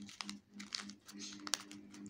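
A sheet of lined notebook paper crinkling in the hands as it is folded into a seed packet: irregular soft crackles, over a faint steady hum.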